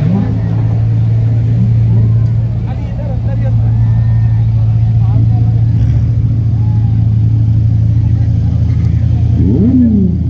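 Sports car engines running at low speed as the cars roll past one after another, a steady low drone, with a brief rev that rises and falls near the end. Crowd chatter underneath.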